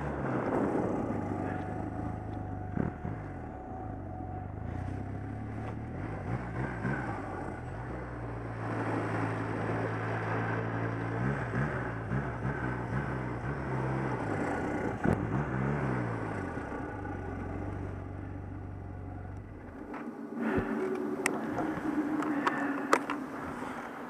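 1100 Turbo snowmobile engine running under a rider, its pitch rising and falling a few times with the throttle. About 20 seconds in the engine note drops away, leaving lighter rustling and a few sharp clicks.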